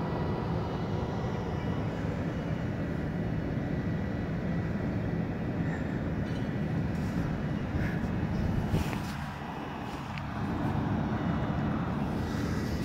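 Steady low rumble of the Great Lakes freighter Philip R. Clarke as it backs slowly past close by, easing off briefly about nine seconds in.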